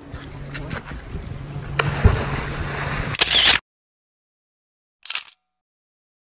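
A person jumping into the sea: splashing and sloshing water, with a sharp splash about two seconds in. The sound then cuts off abruptly to silence about three and a half seconds in, broken only by one short burst about five seconds in.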